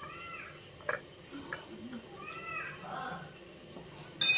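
A cat meowing faintly, twice. In between come a couple of light clicks from a steel fork pricking boiled eggs in a steel bowl.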